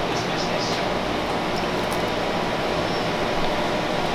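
Portable air conditioner running with a steady, even rushing noise.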